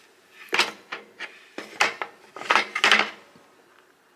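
Rattling knocks and clunks of a Black and Decker Workmate 225's bamboo jaw being worked loose and lifted out of its steel frame so it can be moved to another width slot. A run of sharp knocks comes from about half a second in to about three seconds in, then it goes quiet.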